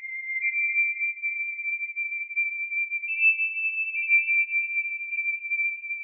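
Electronic tones: two or three steady, high, whistle-like tones sounding together, one stepping slightly higher about three seconds in.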